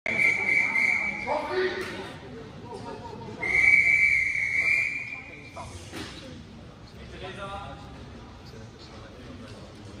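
Swimming referee's whistle: two long, steady blasts about two seconds apart, the second louder. The long whistle calls the swimmers up onto the starting blocks.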